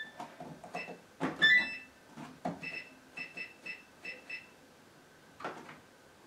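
Gorenje WaveActive washing machine's control panel beeping as its buttons are pressed in service test mode: about eight short, high beeps, the last five in quick succession, with a few soft clicks and knocks of handling.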